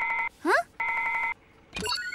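Control-console call signal ringing in two short warbling bursts. Near the end, a click and brief beep as the red button is pressed to answer the call.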